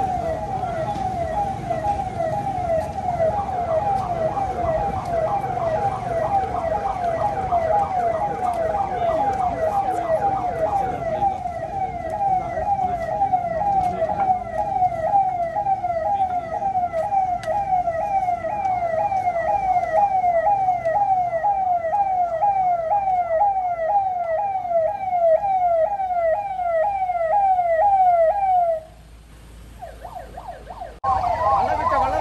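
Police vehicle siren sounding a fast, repeating wail of rapid pitch sweeps, which cuts off about a second before the end. Under the first third a low rumble of vehicle engines runs beneath it.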